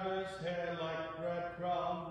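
A man and a woman singing together, his lower voice under hers, the sung line moving note by note and fading away near the end.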